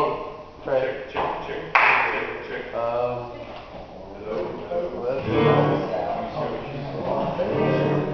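Acoustic guitar sounding in a few short, separate strums and notes during a sound check, with quiet talking in the room.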